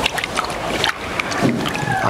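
A hand stirring water in a plastic bucket: water sloshing, with small splashes and knocks against the plastic.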